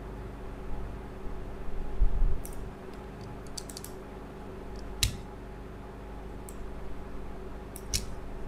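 Scattered clicks of a computer mouse and keyboard as pen-tool anchor points are placed: a quick cluster in the middle and a sharper single click about five seconds in. A low bump comes about two seconds in, over a steady low hum.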